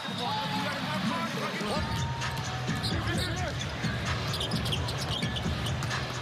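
Basketball game court sound: a basketball bouncing on the hardwood as it is dribbled, with short sneaker squeaks, over steady arena crowd noise.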